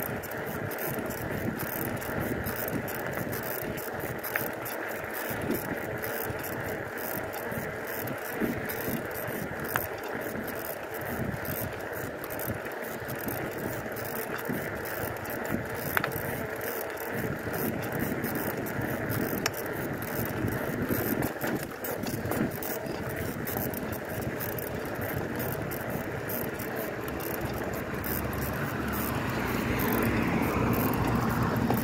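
Bicycle riding along a street: steady rush of tyres rolling on pavement and air moving past, with a few sharp clicks along the way, growing louder near the end.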